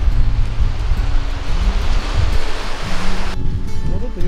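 Sea surf washing over a boulder shore with wind on the microphone, over background music with a steady bass line; the surf noise cuts off suddenly a little past three seconds in.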